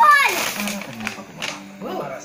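A short, excited exclamation in a high voice that falls in pitch, right at the start, followed by quieter rustling of a paper shopping bag as a piece of clothing is pulled out of it.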